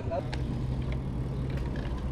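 Riding noise of a bicycle filmed from its handlebar: a steady low rumble of tyres on the road and wind on the microphone, with a low hum through most of it and a few faint ticks. A voice trails off at the very start.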